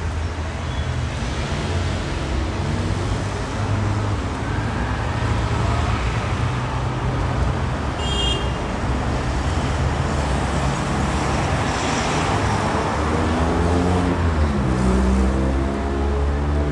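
City street traffic: cars driving past with a steady low engine and tyre rumble. There is a brief high-pitched squeak about halfway through.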